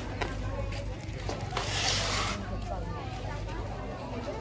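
Background chatter of several voices over a steady low hum, with a brief rustling hiss lasting under a second about one and a half seconds in.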